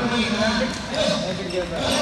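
Futsal ball being kicked and bouncing on a hard indoor court, with shouting voices of players and onlookers around it.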